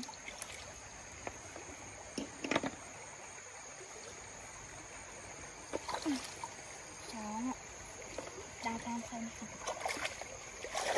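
Shallow stream water splashing briefly a few times as someone wades and gropes in it by hand, the clearest splash about two and a half seconds in. Short vocal sounds come in between, in the second half.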